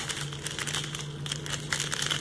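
Clear plastic packets of diamond-painting drills crinkling as they are handled, with a steady low hum underneath.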